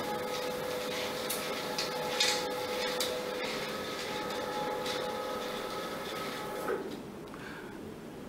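Motorized curtains closing: a steady electric motor hum with faint sliding and rubbing, which stops about seven seconds in once the curtains are shut.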